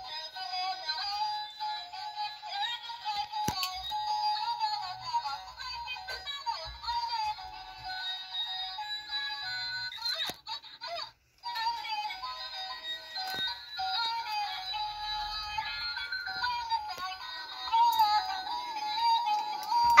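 Music with a high, synthetic-sounding sung melody playing steadily, dropping out briefly about halfway through.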